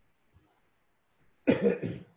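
A man coughs twice in quick succession about one and a half seconds in, after a short near-silent pause.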